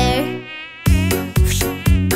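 Mosquito buzzing sound effect, a thin high whine. The song's backing beat drops out under it and comes back in just under a second in.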